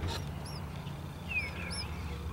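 Small birds chirping outdoors: a few short, high chirps and one falling chirp scattered through the two seconds, over a faint low rumble.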